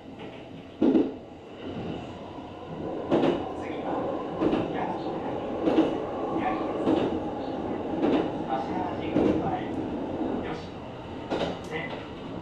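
Kintetsu Series 23000 Ise-Shima Liner electric train running at speed, heard from inside the front of the train: a steady rolling rumble, with wheels clacking over rail joints about once every second or so.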